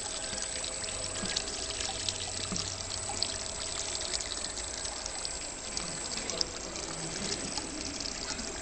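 Screw press dewatering: pressed-out water trickles and drips from the screen drum into a collecting pan, over a low steady hum from the press.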